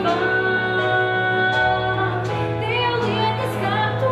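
Live band music: female vocalists singing sustained notes over electric bass guitar, acoustic guitar and keyboard accompaniment.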